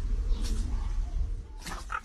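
Two small dogs play-fighting, growling low, with a few sharp yelps or scuffles near the end.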